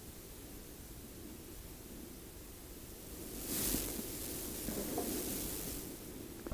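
Faint steady hiss, then about three and a half seconds in, a couple of seconds of rustling handling noise as the hand and adhesive tube are drawn away from the PVC cell.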